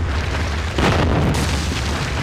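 Sound effect of a stone wall being smashed through: a deep rumbling boom and crashing, crumbling rubble, loudest just under a second in.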